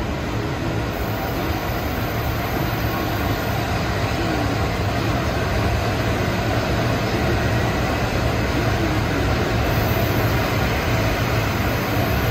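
JR Freight EF210 electric locomotive rolling slowly past at close range as it draws in with its train of railcars: a steady hum and rumble from its traction motors and wheels on the rails, growing a little louder as it comes alongside.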